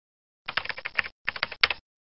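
Keyboard typing sound effect: two quick runs of keystrokes with a short break about a second in, ending on a louder stroke.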